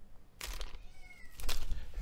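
A house cat meowing faintly, a short call about a second in, over the rustle and knocks of plastic-bagged cables and gear being handled on a table.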